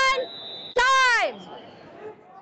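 A high-pitched voice shouting long, drawn-out calls about a second apart, the second one sliding down in pitch as it trails off, as the wrestling period's clock runs out. A faint steady high tone sounds between the calls, then only gym background noise.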